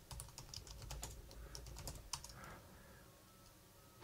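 Faint computer keyboard typing: a quick run of keystrokes that stops about two and a half seconds in.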